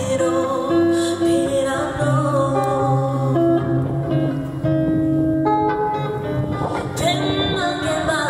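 A woman singing a melodic song with acoustic guitar accompaniment.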